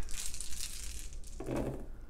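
A handful of seven plastic six-sided dice shaken and rolled onto a paper character sheet on the table, clattering as they tumble and settle.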